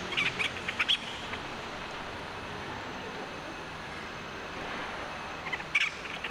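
Two quick clusters of short, high chirping calls from an animal, one in the first second and one near the end, over a steady outdoor background hiss.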